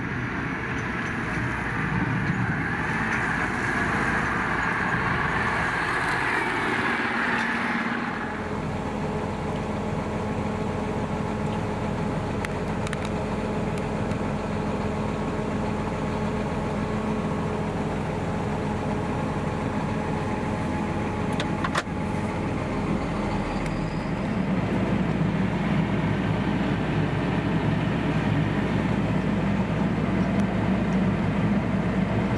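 Massey Ferguson tractor pulling a silage trailer approaching across a field, then, about eight seconds in, its engine running steadily as a low drone heard from inside the cab, with one sharp click a little after twenty seconds.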